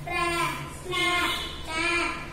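A child's voice reading aloud in a sing-song chant, about three drawn-out syllables evenly spaced, each held for around half a second.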